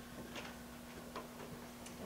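Quiet room tone: a steady low electrical hum, with a few faint, sharp clicks spaced irregularly through it.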